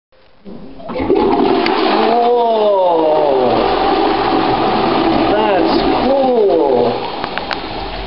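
Toilet flushing: a loud rush of water starts about a second in, runs steadily for about six seconds, then drops to a quieter flow near the end.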